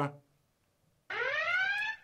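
A short electronic tone with overtones that rises in pitch, starting about a second in and lasting just under a second: an edited-in sound effect.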